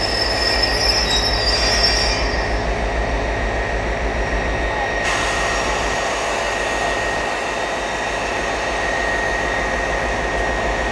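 Class 57 diesel locomotive's EMD two-stroke engine running with a steady, fast low throb. A high squeal from the train sounds over it for the first two seconds or so.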